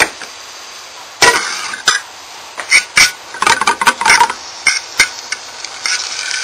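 A metal fork clinks and scrapes against an aluminium frying pan as anchovies are mashed into the hot oil: a string of sharp, irregular knocks over a low steady hiss.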